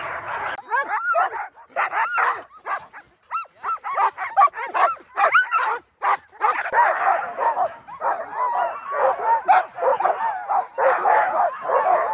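A pack of sled dogs, Alaskan huskies, yipping, barking and howling all at once. Many voices overlap in short, high cries that rise and fall in pitch, with brief lulls about three and six seconds in.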